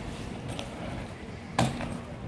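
A single sharp knock on concrete about one and a half seconds in, from BMX riding on a paved plaza, over low outdoor background noise.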